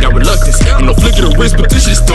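Hip hop song: rapping over a beat with heavy bass.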